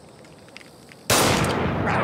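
A pistol shot about a second in, sudden and loud, followed by a long rumbling, echoing tail.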